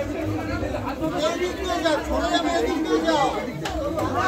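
Crowd chatter: several people talking at once, close by.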